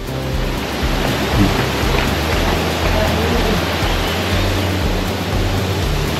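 Steady rush of water at a dam: an even, loud hiss with a low rumble underneath.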